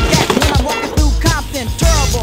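Hip hop music with a heavy bass beat and curved, voice-like sounds over it.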